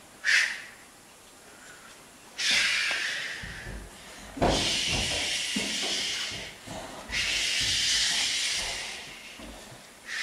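Three long hissing whooshes, like wind, each lasting two to three seconds, with soft thuds beneath the first two.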